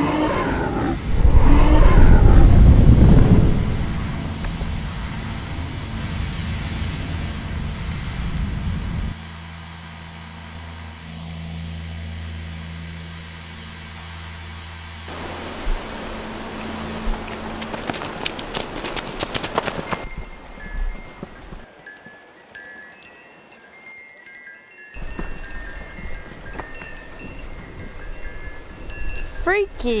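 Film soundtrack effects: a loud rumbling swell for the first few seconds, then a steady low drone. From about twenty seconds in there is a light tinkling of wind chimes.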